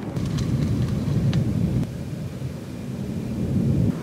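Wind buffeting the microphone: an uneven low rumble with a few faint clicks.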